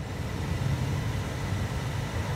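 Van's heater blower motor running fast with air rushing from the dash vents, getting louder in the first half second as the fan speed is turned up, then holding steady. The newly replaced blower motor resistor is doing its job of controlling the fan speed.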